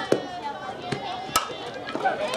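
A softball bat hitting a pitched ball with one sharp crack just after the start, followed about a second later by another sharp knock.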